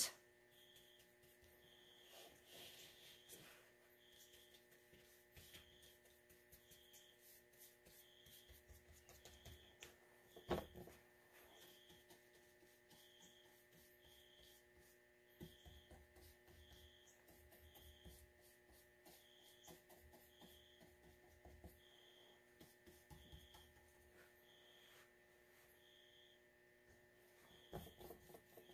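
Near silence: room tone with a steady electrical hum and a faint high blip repeating about once a second, under faint watercolour brush strokes on paper. One soft knock about ten seconds in.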